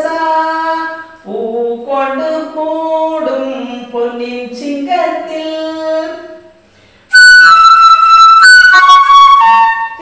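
A woman sings a phrase of the melody unaccompanied, then about seven seconds in a bamboo Carnatic flute takes over, much louder, playing the song's tune in clear held notes.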